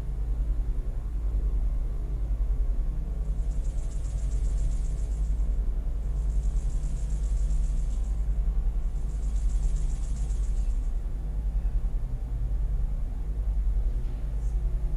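A steady low rumble, with three bursts of a high, finely pulsing buzz, each about two seconds long, in the middle.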